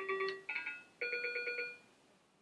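Small handheld electronic keyboard playing short beeping notes: a held note, a quick flutter of repeats, then a higher note pulsing rapidly for most of a second.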